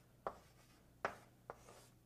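Chalk on a chalkboard while writing: three quiet, sharp strokes as the chalk taps and scrapes across the board.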